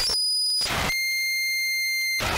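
Feedback from a ball-gag contact microphone run through effects pedals and an amplifier. Harsh noise breaks in twice in the first second, with high whistling tones in between, then it settles into a steady high-pitched feedback whistle with overtones from about a second in.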